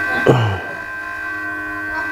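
Hot-air rework blower running with a steady whine, heating the solder to fit a small SMD capacitor onto a laptop motherboard.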